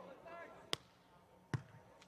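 Two sharp, faint slaps of a hand on a beach volleyball, under a second apart, the second being the jump serve struck; otherwise near silence.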